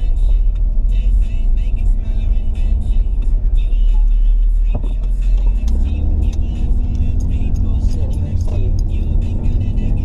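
Low engine and road rumble inside a moving car's cabin, getting louder about six seconds in, with music with singing playing over it.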